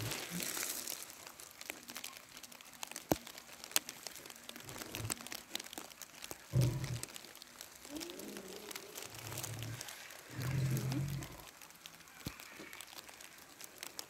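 Light crinkling and rustling with scattered clicks, and a few short, low sounds in the second half.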